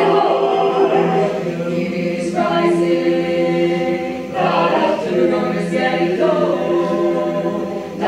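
Mixed choir singing a cappella in full harmony, holding sustained chords that move to a new chord about every two seconds.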